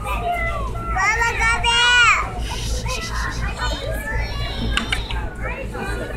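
Young children's voices chattering and calling out, with a high-pitched child's call about a second in, the loudest moment.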